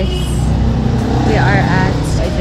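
A woman's voice speaking briefly in the second half over a steady low rumble.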